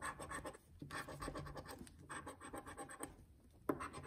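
Coin-shaped scratcher scraping the coating off a scratch-off lottery ticket: short runs of quick rasping strokes with brief pauses between them.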